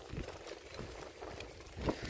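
Bicycle rolling along a gravel path: a faint, steady low rumble of the tyres on the gravel, with a brief louder noise near the end.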